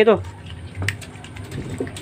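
Water sloshing in a plastic tub as an otter reaches in after a fish, with a sharp click a little under a second in.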